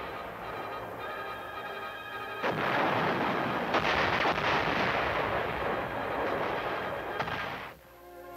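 Heavy guns firing on a range. The tail of one shot fades in the first seconds, then a new blast comes suddenly about two and a half seconds in, and its long rush of noise holds until it cuts off just before the end.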